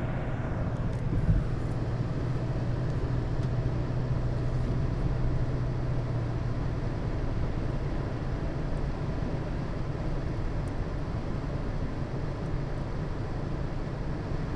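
Steady engine and road noise heard from inside a moving car's cabin, with a low drone that eases off about six seconds in. There is a brief thump about a second in.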